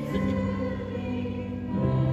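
Live orchestral music with grand piano and massed voices singing held chords, moving to a new chord near the end.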